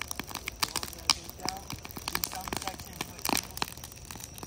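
Wood bonfire crackling, with many sharp pops and snaps from the burning boards.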